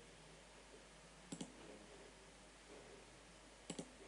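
Computer mouse button clicking over near silence: two quick double clicks, about a second in and near the end.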